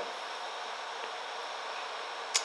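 Steady, even hiss of background room noise, with no notes or other events.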